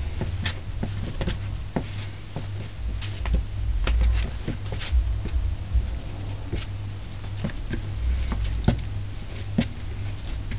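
Bread dough being kneaded by hand on a wooden cutting board: irregular soft pats, clicks and knocks as the dough is pressed, folded and turned, with low thumps from the board, over a steady low hum.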